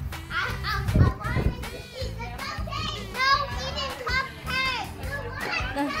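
Young children's excited high-pitched voices and squeals while playing, with a laugh near the end, over background music.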